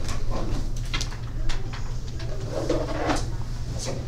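Room noise: a steady low hum under scattered light clicks and knocks, with a low, muffled, voice-like sound in the second half.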